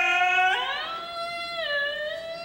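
A long held musical note that slides up in pitch about half a second in, holds, then drops back down near the end.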